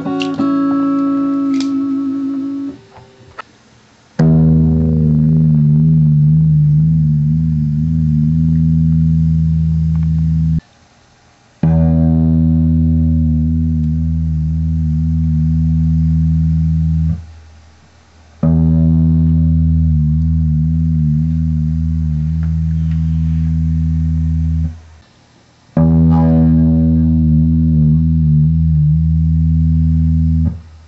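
Background music on distorted guitar: a few plucked notes at first, then slow, heavy low chords. Each chord is held and rings for about six seconds before a brief stop, four times in all.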